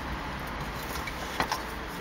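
Steady hum and hiss of a car cabin, with a single faint click about one and a half seconds in.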